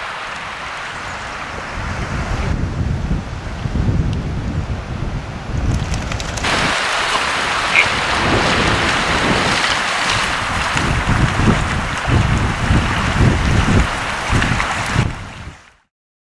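Water splashing and swishing as a hunter and a retriever wade through a flooded marsh, with wind rumbling on the microphone. It gets louder about six seconds in and fades out at the end.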